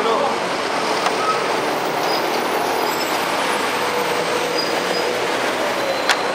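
Steady street traffic noise, a passing heavy vehicle such as a bus or truck, with a faint engine drone.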